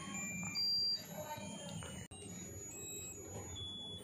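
Musical lotus-flower birthday candle playing its tinny electronic tune: a string of short, thin, high beeping notes one after another, the loudest just under a second in.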